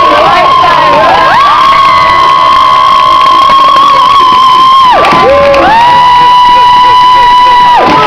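Crowd of teenagers cheering and screaming, with long high-pitched held shrieks: one about four seconds long, then after a brief dip another of about two seconds.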